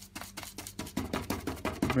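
Stiff, hard-bristled flat brush dabbing and scrubbing acrylic paint on a paper palette: a rapid run of short, scratchy taps.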